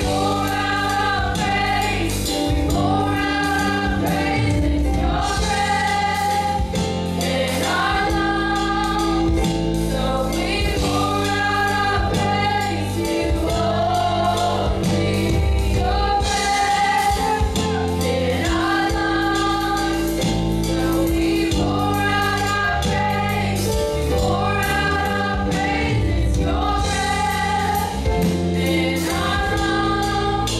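Live gospel worship song: several women singing together into microphones, accompanied by keyboard and drums, with long held notes.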